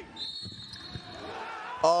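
Referee's whistle blown once, a single high steady blast of about a second and a half that sinks slightly in pitch, for contact on a drive to the basket. Faint court knocks sound under it.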